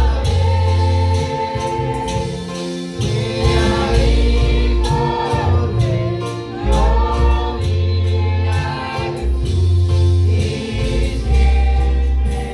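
Live church worship music: singing over a band with a drum kit, long deep bass notes and cymbals.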